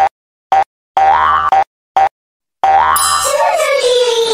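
A cartoon-style children's TV logo jingle, chopped by an edit effect into short clipped stabs with dead-silent gaps between them. About two and a half seconds in it runs on unbroken, with a gently falling pitch slide.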